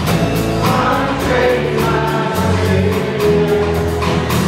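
Live worship band playing a song: acoustic guitars and a drum kit keeping a steady beat, with voices singing.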